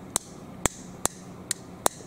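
Small plastic push button on the side of an Anker wireless power bank clicked five times in a fairly even series, about two presses a second, as it is pressed over and over to switch the bank on.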